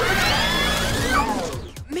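Cartoon action sound effects mixed with the score: a sudden loud rush of noise with sweeping tones that rise and fall through it, fading out about a second and a half in.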